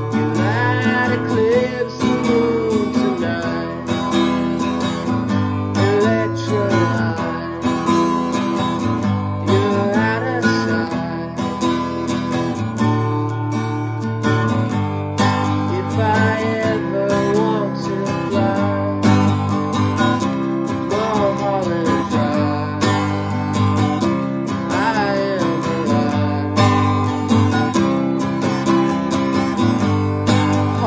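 A man singing while strumming chords on an acoustic guitar.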